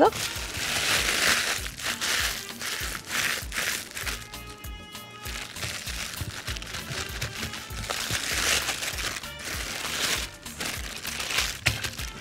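Thin plastic bag crinkling and rustling in repeated bursts as hands press and shape a rice-and-meat burger patty inside it.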